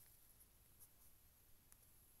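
Near silence: faint room tone with a couple of very faint ticks.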